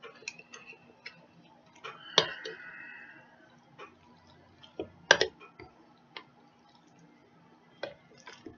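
A spoon clicking and knocking against a mixing bowl while a thick macaroni, cheese and gravy mixture is slowly stirred: scattered light taps, with a louder knock and a short scrape about two seconds in and another louder knock about five seconds in.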